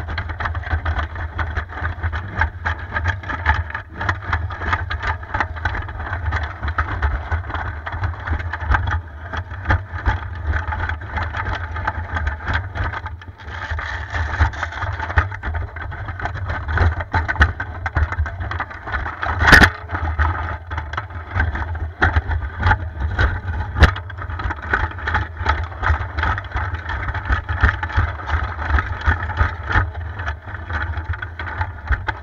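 Drive motors and gearing of a homemade tracked robot running, heard close up: a steady whine over a low rumble, with rapid, continuous clicking and clattering from the tracks. There is a loud sharp crack about two-thirds of the way in, and a smaller one a few seconds later.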